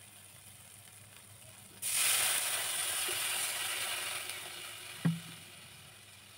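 Water poured into a hot steel kadai of oil-fried masala paste: a sudden loud sizzle and hiss about two seconds in that slowly dies down. A single knock near the end.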